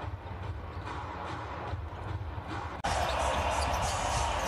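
Basketball game sound on a hardwood court in a thinly filled arena: a ball bouncing and scattered sharp court noises over low crowd murmur. About three seconds in, an edit cut jumps abruptly to a louder stretch of arena noise.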